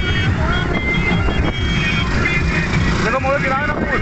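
Motorcycle engines running and wind buffeting the phone microphone while riding among a group of motorcycles. A voice calls out about three seconds in.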